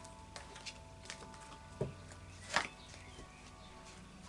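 Oracle cards being handled on a cloth-covered table: a few light clicks and a soft knock, then a brief card swish about two and a half seconds in, the loudest sound. Faint background music runs underneath.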